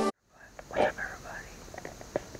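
A man whispering briefly, the loudest breathy burst a little under a second in followed by a few fainter whispered sounds, with small clicks near the end.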